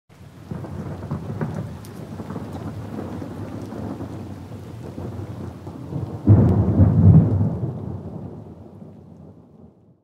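A steady low rumbling hiss. About six seconds in comes a loud, deep crash that rolls away and fades out.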